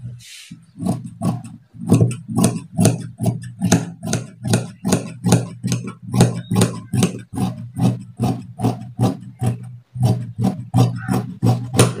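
Large dressmaker's shears cutting through folded fabric on a table: a steady run of snips, about three a second, with a short break near the end.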